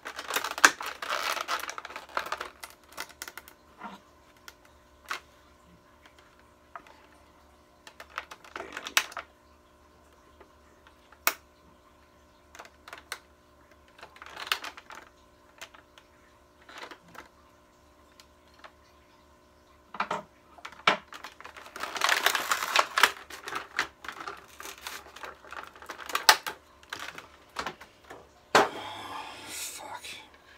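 Clear plastic packaging crinkling and rustling in bursts while being handled and worked open, with scattered small clicks and taps of plastic parts and a tool on a wooden table. The longest stretch of crinkling comes about two-thirds of the way through.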